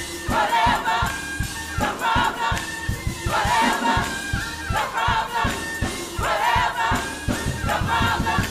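Gospel choir singing in short repeated phrases over a keyboard-led band with a fast, steady beat.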